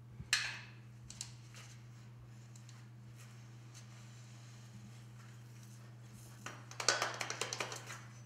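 Dry casting sand shifting and trickling as an aluminum casting is dug out of a bucket of sand by gloved hands: a short hiss of sliding sand just after the start, then quiet, then a burst of rattling, pouring sand near the end as the casting is pulled free. A low steady hum runs underneath.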